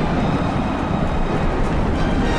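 A dense barrage of fireworks going off, the bursts blurring into one steady low rumble with a faint crackle.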